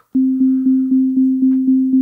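Befaco Kickall synthesized kick drum in VCV Rack, struck by a clock about four times a second, each hit a click followed by a sustained tone. Every hit is on the same pitch because the Glass Pane sequencer is only playing its first step, with nothing patched between steps.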